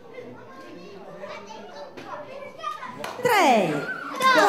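Children's voices chattering in a hall, then from about three seconds in loud, repeated cries that swoop down in pitch.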